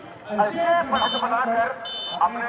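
A man commentating, with two short, high-pitched whistle blasts about one second in and again near the end.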